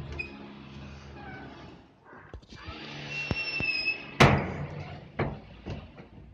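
A door pushed open by hand: a high squeak a little after three seconds in, then a sharp bang just after four seconds, the loudest sound, with a few lighter knocks after it.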